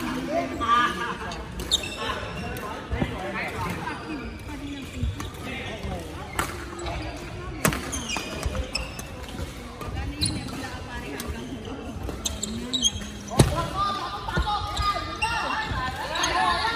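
Badminton rally: racquets hitting the shuttlecock with sharp cracks one to three seconds apart, about five in all, with players' footfalls on a wooden court floor and voices in a large sports hall.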